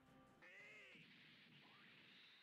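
Near silence: faint room tone, with one faint short call about half a second in whose pitch rises and then falls.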